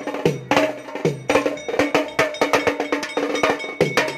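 A drum set of tuned toms and a cymbal played with sticks in a fast, driving rhythm of about four strokes a second. The drums ring with a pitch that sags after each stroke, and a high ringing tone is held from about a third of the way in.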